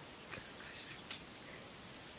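Steady high-pitched trilling of a forest insect chorus, with a few faint short clicks about midway.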